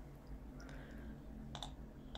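A few faint computer mouse clicks, most of them bunched together near the end.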